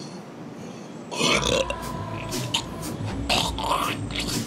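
A man gagging and dry-heaving, with throaty, burp-like retching noises that start suddenly about a second in and come in irregular bursts.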